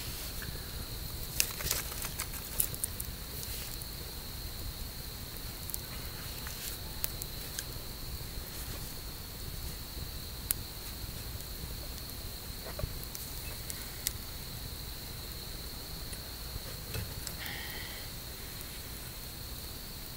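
Steady, high-pitched chirring of night insects, holding one pitch throughout, with scattered sharp crackles and pops from a wood campfire.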